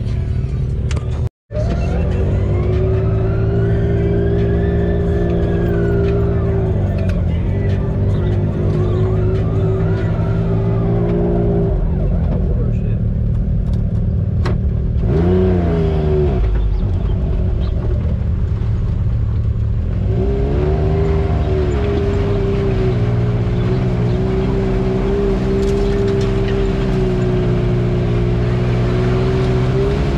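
Side-by-side UTV engine running, its pitch rising and falling several times as the throttle is worked; the sound cuts out for a moment about a second in.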